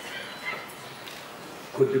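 Low hall ambience with faint background talk, then a voice starts speaking loudly near the end.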